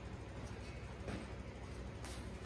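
Quiet room tone: a faint, even background noise with a steady low hum and no distinct events.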